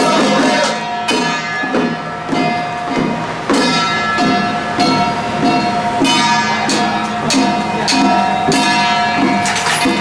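Temple ritual music from a xiaofa troupe: group chanting over a steady beat of hand-held drums, about two strikes a second, with steady ringing metallic tones.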